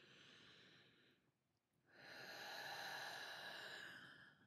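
Slow breathing close to the microphone, demonstrating diaphragmatic breathing: a short, quiet breath, then a longer, louder breath starting about two seconds in.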